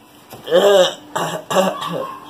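Three short wordless vocal sounds, grunts from a man being shaken awake from sleep, about half a second, a second and a second and a half in.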